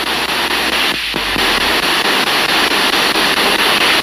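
Spirit-box radio sweeping through stations, played through a portable speaker: a steady hiss of static chopped by rapid, evenly spaced ticks as the tuner steps.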